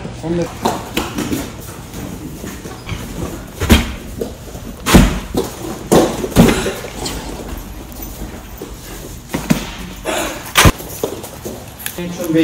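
A handful of sharp slaps and thuds at irregular intervals in a gym hall, from kicks and strikes landing on foam pads and mats, mixed with children's voices.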